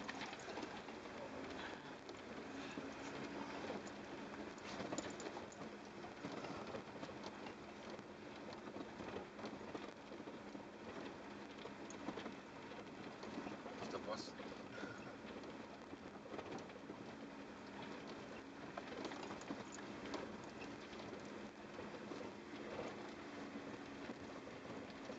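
A 4x4's engine and tyres on a stony desert track, heard from inside the cabin: a steady low hum with scattered small knocks and rattles.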